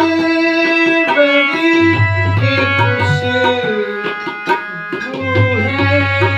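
Harmonium playing held chords and melody over a tabla rhythm, with crisp hand strokes on the small drum and deep bass strokes on the large one swelling three times.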